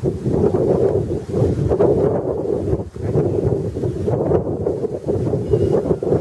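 Wind buffeting the microphone: a loud, uneven rumble that dips briefly about halfway through.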